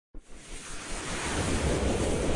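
A rushing whoosh sound effect for an animated logo intro, starting suddenly and swelling steadily louder, with a low rumble beneath.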